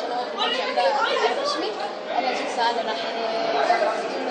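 Speech: a boy talking in Arabic, with other voices chattering behind him.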